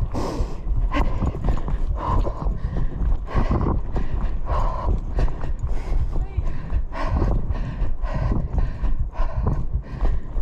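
Running footsteps on a dirt bush trail, heard from a camera carried by a moving runner: a regular series of footfalls over steady low rumble from the camera's movement.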